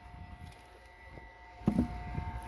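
A faint steady hum, then a few loud dull knocks about a second and a half in.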